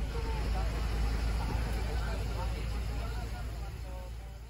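Cabin noise of a moving bus heard from inside: a steady low rumble from the engine and road.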